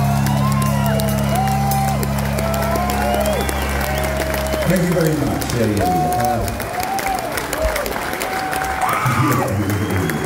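A ska band's live music ending on a held chord that stops about halfway through, with the audience cheering and whooping over and after it.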